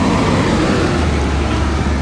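Loud, steady outdoor rumble with hiss, strongest at the bottom and growing heavier about a second in.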